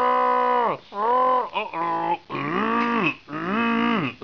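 Groan tube (moo tube) being tipped over and over, giving a series of drawn-out groans, each holding one pitch and then sliding down as it runs out.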